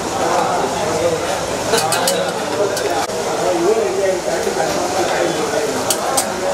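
Overlapping voices of a crowd talking in a hall, with a few sharp clinks of serving utensils about two and three seconds in and again near the end.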